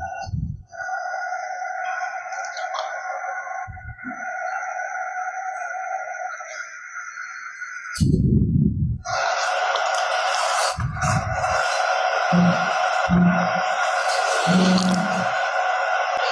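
A steady pitched electronic-sounding tone with overtones, held for several seconds. It cuts out about eight seconds in and comes back louder a second later. Short low bumps sound now and then, a few of them with a low hum in them.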